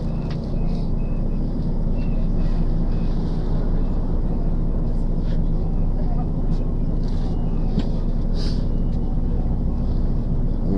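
Vehicle engine running in slow traffic, a steady low hum heard from inside the vehicle, with faint voices from the street.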